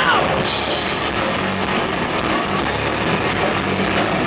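Live rock band playing loud: drum kit, electric guitar and bass. A vocal line ends just as the full band comes in hard about half a second in.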